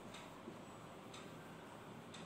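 Faint scratching of a marker writing on a board, a few light strokes over quiet room hiss.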